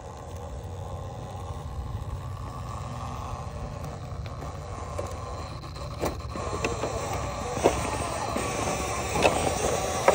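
1/10-scale RC rock crawler climbing a rock face: tyres and chassis scraping and clicking against the rock over a steady low rumble. The sharp knocks come more often and louder in the second half.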